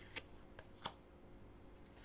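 Oracle cards being slid across one another in the hand as the front card is moved behind the deck: two faint clicks of card against card, under a second apart, over near silence.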